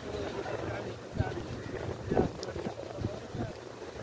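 Several men's voices talking indistinctly, with wind buffeting the microphone as a steady low rumble.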